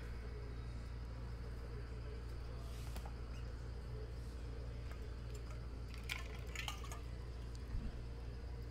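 Low, steady background hum of room noise, with a few faint clicks and rustles about six seconds in.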